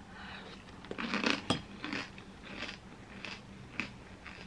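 A mouthful of smoothie bowl with granola being chewed, with short crunches every half second or so and one sharp click about a second and a half in.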